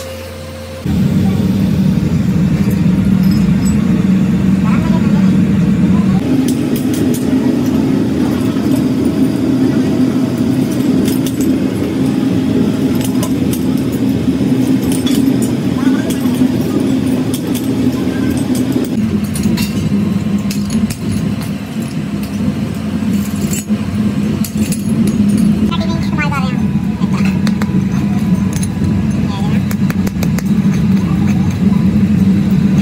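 Loud, steady drone of workshop machinery. It starts abruptly about a second in and shifts in pitch twice.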